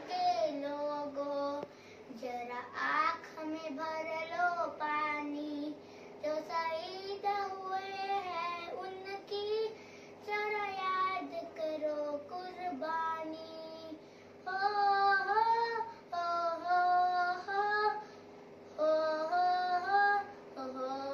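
A young girl singing solo and unaccompanied, in sung phrases broken by short pauses for breath.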